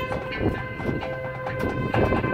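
High school marching band playing. The winds enter on a sustained chord right at the start and hold it, over regular drum and percussion strikes.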